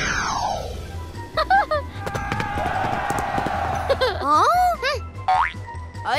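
Cartoon sound effects over background music with a steady beat: a falling sweep at the start, then springy boings about a second and a half in and again near the end.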